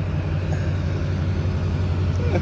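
Duramax diesel pickup truck engine running steadily under load as it drags a car out of a parking spot, a low, even rumble.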